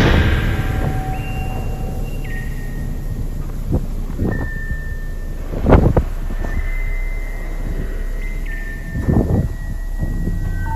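Wind buffeting the phone's microphone in gusts over a steady low rumble, the strongest gust a little past halfway. Faint held tones run through it, jumping from one pitch to another every second or two.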